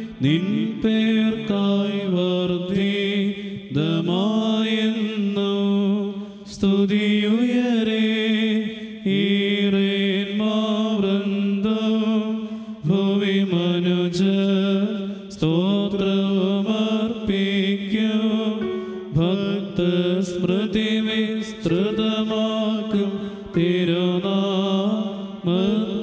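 Clergy chanting a Syriac Orthodox evening prayer together as a melodic chant, in phrases of a few seconds each with short breaths between.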